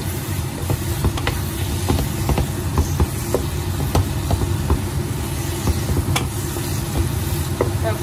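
Wooden spatula stirring thick, simmering potato masala (poori masala) in a nonstick kadai, with scattered short clicks of the spatula against the pan over a steady low hum.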